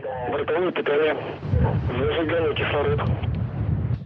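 Launch-control voice calls over a narrow, radio-like link, with a low rumble from the Soyuz rocket's engines that swells about a second and a half in as they start to ramp up toward liftoff.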